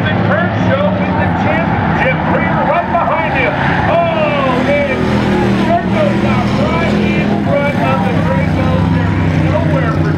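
Several race car engines running laps on an oval track, their pitch rising and falling over and over as they go by.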